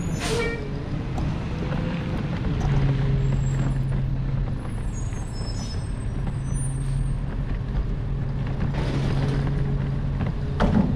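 Garbage truck with a short, sharp air-brake hiss right at the start, then its engine running with a steady low hum.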